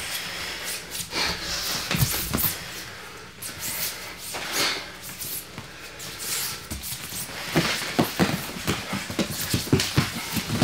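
Two grapplers breathing hard during a no-gi jiu-jitsu roll, with hands slapping and feet scuffing on the foam mats as they hand-fight. A quick run of slaps and thuds comes in the last couple of seconds as they close in and tie up.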